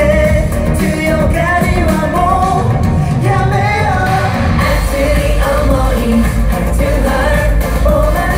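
Live pop song: male voices singing into microphones over loud dance-pop backing music with a steady beat, the bass growing heavier about halfway through.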